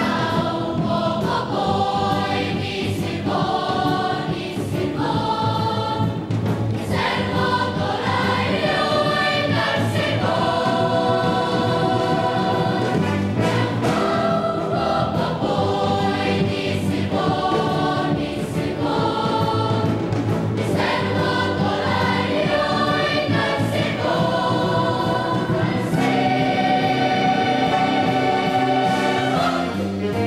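Children's choir singing a Welsh-language song in phrases of held notes, over instrumental backing.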